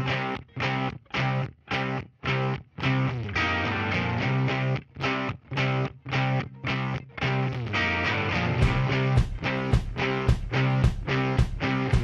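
Background rock music: electric guitar playing short, chopped chords in a steady rhythm, with drum hits coming in about two-thirds of the way through.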